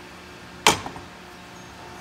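A single sharp knock with a short ringing tail, about two-thirds of a second in, as the opened chemical sprayer pump is handled. It sits over a faint steady hum.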